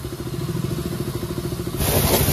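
Motorcycle engine idling with a steady, even pulse. Near the end it gives way to the loud hiss of a pressure-washer jet spraying water.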